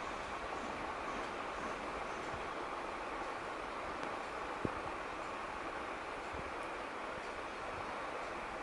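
Steady background noise with no distinct source, and one faint click about halfway through.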